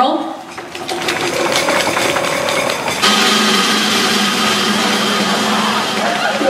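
Audience applauding, the clapping joined about three seconds in by louder cheering and voices.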